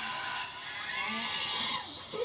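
Faint wordless cartoon voice cries from a claymation sheep character, wavering up and down in pitch, played from a TV speaker into the room.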